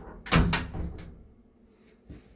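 Elevator's manual hinged landing door pushed open from inside the car, with one clunk of the metal door and its latch about a third of a second in that rings out for about a second.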